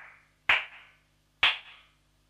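Breakdown in a psytrance track: two sharp electronic percussion hits about a second apart, each dying away quickly, with the rest of the music dropped out and only a faint low tone under them.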